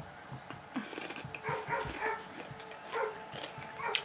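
Pit bull barking in a run of short calls.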